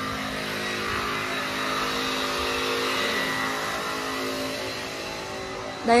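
Steady engine hum of a motor vehicle running close by, over a wash of street noise, swelling slightly midway.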